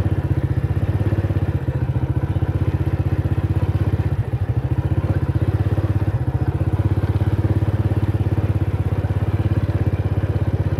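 Small motorcycle engine running at low, steady speed with a rapid even pulse, as it travels along a dirt track.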